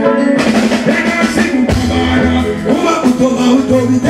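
Live band music: a drum kit and bass guitar keep a steady beat while a singer's voice carries over the top.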